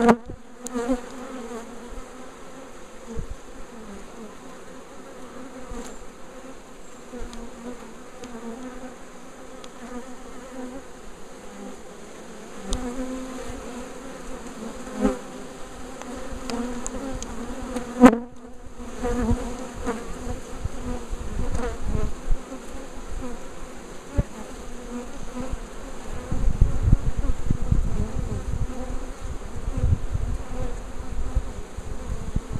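A honeybee swarm buzzing in a steady hum as the bees crowd onto the hive's top bars and move into the hive. A low rumble joins near the end.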